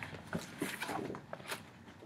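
Faint rustling and light knocks of a stiff paper shopping bag as a cardboard gift box is pulled out of it, a few short scrapes and clicks that die away near the end.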